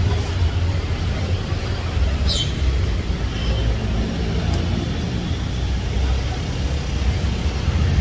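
Street traffic noise: a steady low rumble of road vehicles, with a brief high squeak about two seconds in.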